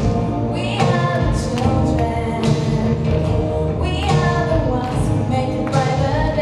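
A group of singers performing a song live with instrumental accompaniment and a steady beat, amplified through the hall's sound system.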